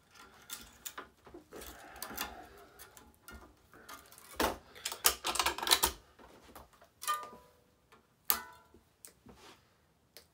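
Tennis string being pulled through the racquet frame and tied off in a finishing knot, with irregular clicks and scrapes of string against the frame and the machine's clamps. There is a quick run of louder clicks around four to six seconds in, and two short ringing clinks near seven and eight seconds.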